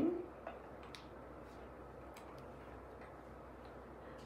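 A few faint, irregular clicks of a screwdriver tightening the small screws of a plastic shade accelerator fitting onto its square rod, the clearest in the first second, over a low steady hum.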